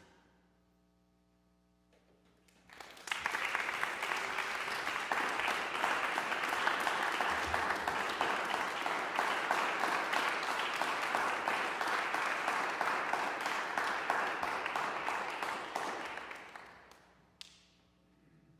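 Audience applauding: the clapping swells up about three seconds in, holds steady, and dies away shortly before the end, followed by a single short tap.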